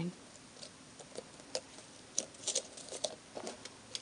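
Faint scattered taps and rustles, about two a second, of fingers pressing a paper bow onto a cardstock box and handling the card.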